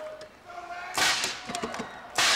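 A compressed-air tennis-ball cannon firing once about a second in: a sudden, sharp burst of air.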